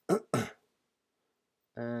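A man clearing his throat twice in quick succession, two short loud bursts, with a word of speech starting near the end.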